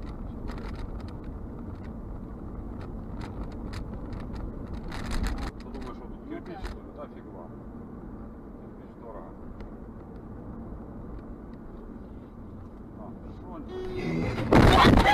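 Steady road and engine rumble heard from inside a moving car through a dashcam microphone, with a brief louder rush about five seconds in and a few faint clicks.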